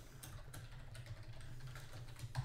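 Typing on a computer keyboard: a quick run of separate keystrokes as a terminal command is entered.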